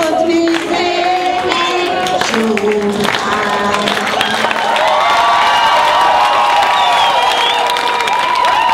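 A group of older women singing together, the song ending about three seconds in. The crowd then applauds and cheers, with whoops over the clapping.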